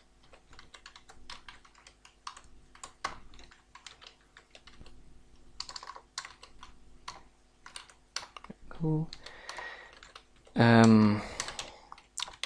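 Computer keyboard typing in short, irregular runs of key clicks as code is entered. About nine seconds in there is a brief vocal sound, and near the end a louder hummed vocal sound lasting under a second.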